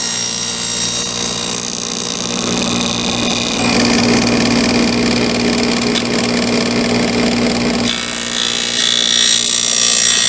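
Table saw running, its blade partly buried in a sacrificial fence, cutting a rabbet along the edge of a maple plywood panel. The sound grows fuller from about four seconds in to about eight while the blade is in the wood, then the saw runs free again.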